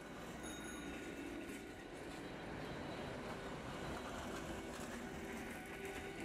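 City street traffic ambience fading in: a broad, even rumble and hiss of passing vehicles that grows slightly louder, under a faint sustained musical tone.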